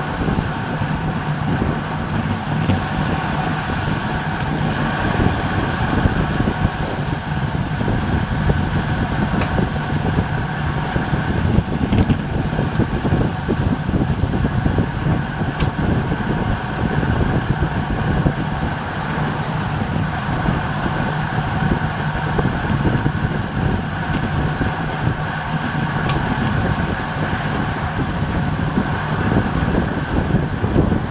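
Steady rush of wind over a bike-mounted action camera's microphone, mixed with tyre noise from a road bike riding on asphalt at about 25 mph.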